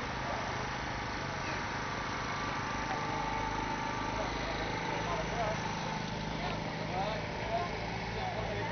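An engine idling steadily, with background chatter of several voices.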